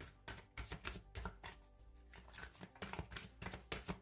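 Tarot deck being shuffled by hand: a quick run of card-on-card clicks and slaps, several a second, with a short lull in the middle.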